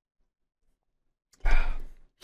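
A man's loud, breathy sigh close to the microphone, about one and a half seconds in, as he lowers a drink after a swig.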